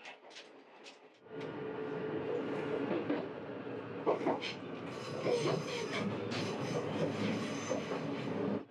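Running noise of the Resort View Furusato's HB-E300 series hybrid railcar, heard from inside the car: a steady rumble of wheels on rail with a steady hum and scattered clatter. It rises sharply a little over a second in.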